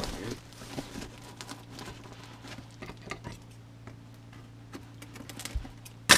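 Faint, scattered scratches and small clicks of fingers picking at packing tape on a cardboard box, over a steady low hum, with a soft low thump near the end.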